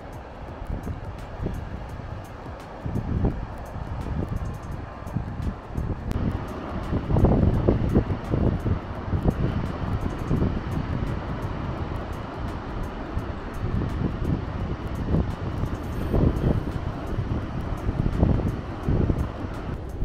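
Wind buffeting the microphone in irregular low gusts, loudest about a third of the way in and again near the end, over the steady wash of large surf breaking below.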